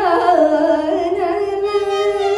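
Female Carnatic vocalist singing a gliding, heavily ornamented melodic phrase, with violin accompaniment following the melody.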